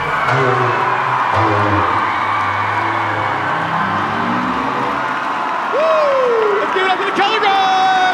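Recorded pop music ending about five seconds in, then a crowd cheering and whooping, with one long falling whoop and louder yells near the end.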